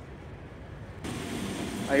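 Steady low background noise that changes suddenly about halfway through to a louder, brighter hiss; a man starts speaking at the very end.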